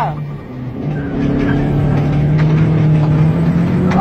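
Car engine accelerating hard, its note rising slowly and steadily over a few seconds, heard from inside the vehicle.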